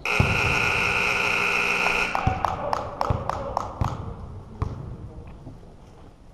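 Gym scoreboard buzzer sounding for about two seconds in a steady, harsh tone, marking the end of the game. Then a run of sharp knocks, about four a second.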